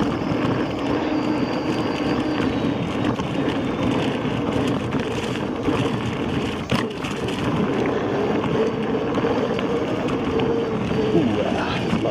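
Inmotion V14 electric unicycle riding fast over a dirt trail: steady tyre and wind noise, with a faint hum that rises in pitch about halfway through and drops again near the end. A single sharp knock comes about seven seconds in.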